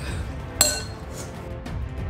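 A metal fork clinks once, sharply and with a brief ring, against a glass bowl about half a second in, over background music.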